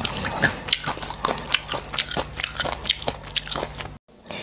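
A person chewing food close to the microphone: an irregular run of wet clicks and crunches, a few every second.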